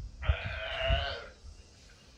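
A sea lion giving one harsh, bleating call about a second long, starting just after the start.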